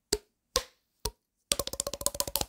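Edited-in sound effect of knocks like a wood block: three single knocks about half a second apart, then a fast run of clicks from about a second and a half in.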